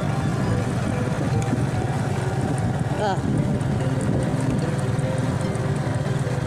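Small motorcycle engine running steadily as it rides along, mixed with wind rumbling on the microphone. A single short spoken "oh" comes about halfway through.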